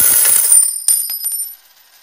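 Silver coins pouring and clinking together with bright metallic ringing. The clatter thins to a few separate clinks about a second in, then stops.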